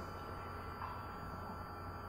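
A pause in speech: a low, steady electrical mains hum with a thin steady tone and faint hiss, the recording's background noise, with nothing else sounding.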